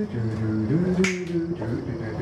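A low hummed tune that glides up and down, with a sharp finger snap about a second in.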